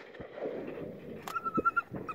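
A short, high, quavering whine, pulsing rapidly for about half a second from a little after a second in, like a retriever whining with excitement. A faint sharp crack comes just before it.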